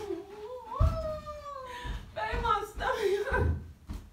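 A woman's long, drawn-out cry of disgust at a bad smell, sliding slowly down in pitch, followed by short shouted exclamations.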